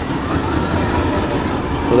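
Slinky Dog Dash roller coaster train rolling along its steel track, a steady rumble that grows slightly louder.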